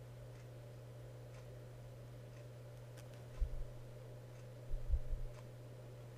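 Quiet room with a steady low hum, and a few soft low bumps about three and a half and five seconds in as a glass Petri dish of mercury is rocked by hand.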